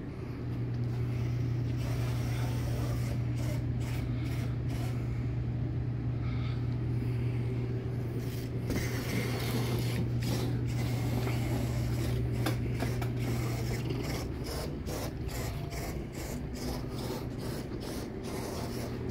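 Small two-wheeled hobby robot's electric drive motors running with a steady low hum as it drives across a tabletop, with rubbing and scraping from its wheels and arms on the table. The hum stops about fourteen seconds in, leaving scattered clicks and knocks.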